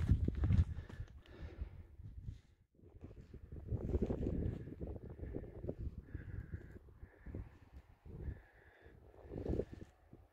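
Wind buffeting the microphone in uneven gusts, swelling about four seconds in and again near the end. Faint short high tones come several times in the second half.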